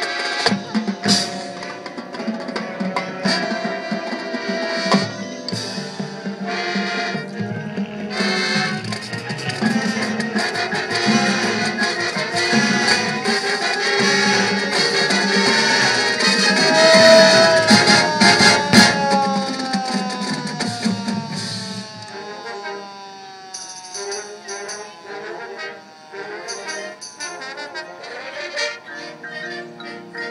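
A high school marching band playing live, brass and drums together, swelling to a loud climax about two-thirds of the way through. It then drops away to a softer, thinner passage.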